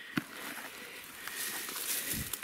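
Rustling and crackling through dry grass and weeds as someone walks and searches, with one short thump just after the start.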